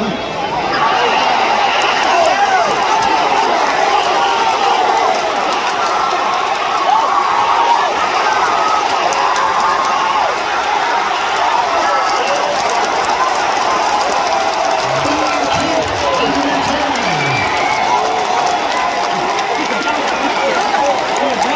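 Large stadium crowd cheering and yelling during a big football play, swelling about a second in and staying loud.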